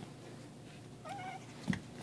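A cat giving one short, faint meow about a second in, followed by a single light knock near the end.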